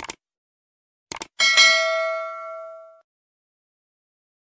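Subscribe-button animation sound effects: a short click at the start, two quick clicks about a second later, then a bright notification-bell ding that rings for about a second and a half and fades away.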